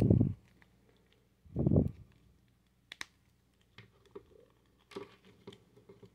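Hard plastic action-figure parts being handled and pried apart as the center chest plate is popped out of the figure's armor. Two short low muffled bumps come in the first two seconds, then one sharp plastic click about three seconds in, followed by a few faint ticks.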